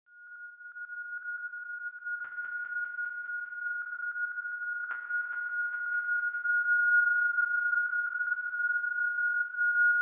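Eurorack modular synthesizer (Doepfer A-100 analog modules into a Make Noise Mimeophon) sounding one steady high pure tone that fades in and slowly grows louder. About two seconds in and again about five seconds in, a rapid patter of short clicks joins it and thins away.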